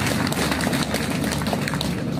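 A crowd applauding: dense, steady clapping from many hands.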